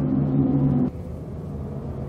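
Subaru Impreza GDA's turbocharged flat-four idling, heard from inside the cabin as a steady low hum that drops noticeably in level a little under a second in.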